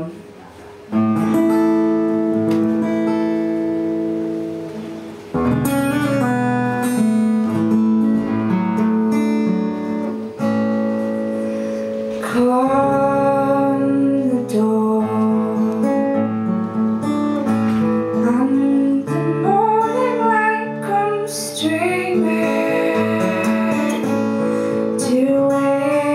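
Live folk song on a steel-string acoustic guitar: chords ringing from about a second in, then a woman's voice singing over the guitar from about halfway through.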